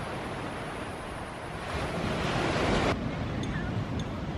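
Steady rushing noise of wind buffeting the microphone, swelling louder for about a second before cutting off abruptly about three seconds in.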